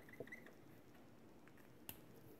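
Near silence with faint handling sounds of a brush pen and art materials: a few small clicks and a brief squeak early on, and one sharper click near the end.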